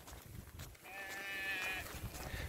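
A sheep bleating once, a wavering call about a second long that starts about a second in.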